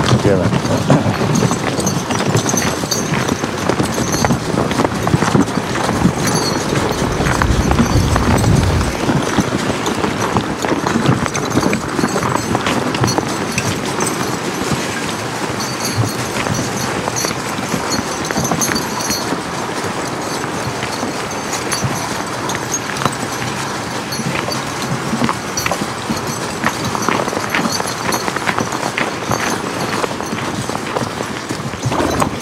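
Footsteps crunching over crusted snow and ice in a steady walking rhythm, with wind rumbling on the microphone for the first several seconds.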